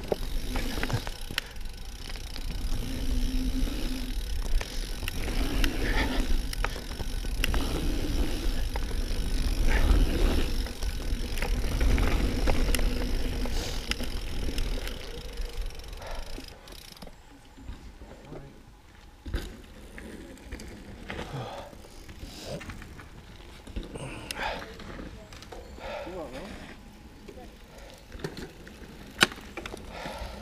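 Mountain bike being ridden over a rough dirt track: a loud low rumble of tyres and air with rattles and knocks for about the first half. Then it goes much quieter as the bike slows and coasts to a stop, with scattered clicks and one sharp click near the end.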